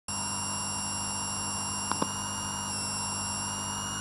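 Steady electronic static hiss with a low hum and several high, steady whining tones, broken by two quick clicks about two seconds in.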